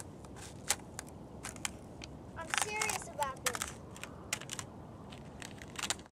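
Thin ice crackling and crunching under a child's sneakers as he stamps on it, a scattered string of sharp cracks. A brief voice comes in about halfway through.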